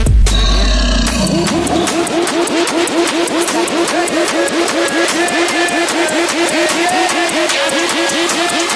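DJ mix transition. A bass-heavy electronic track drops out about a second in, and a new track takes over with a quick, steady pattern of plucked notes and no deep bass.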